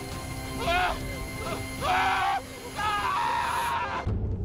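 A person's anguished, wavering cries, several of them, rising and falling in pitch, over sustained background music tones.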